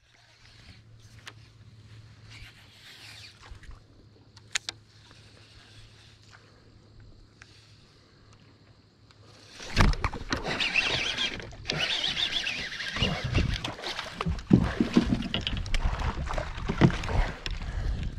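A faint steady low hum with a couple of sharp clicks, then about ten seconds in a sudden loud run of rubbing, crackling and knocking as something presses and moves against the camera and its microphone.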